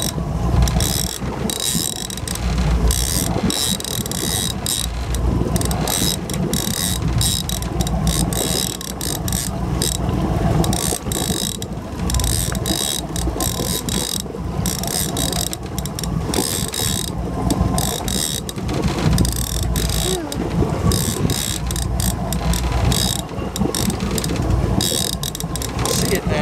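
Trolling reel being cranked continuously, its gears and clicker ratcheting rapidly as a hooked fish is reeled in, over a low rumble.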